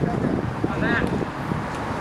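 Ballplayers' voices chattering and calling out on the field, with one raised call about a second in, over steady outdoor background noise.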